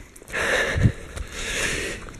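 A runner breathing hard after a long trail run: two heavy breaths, each about half a second long, with a soft low thump after the first.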